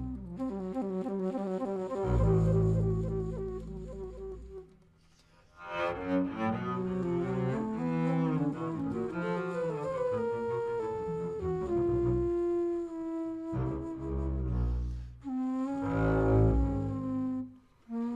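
Modern jazz quintet music led by double bass, with woodwind lines of flute and saxophone, mixing held and moving notes. The music dips to near silence briefly about five seconds in, then comes back with a busier stretch.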